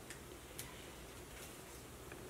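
A few faint, light clicks from small makeup items being picked up and handled.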